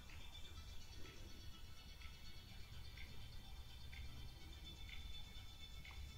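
Faint music with a soft beat about once a second, played through Samsung Galaxy Buds FE earbuds held up close to the microphone as a rough test of their sound quality.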